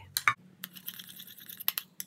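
Metal spoon stirring a thick petroleum-jelly cream in a small ceramic bowl: the spoon scrapes around the bowl, with a few sharp clinks against the rim near the start and again just before the end.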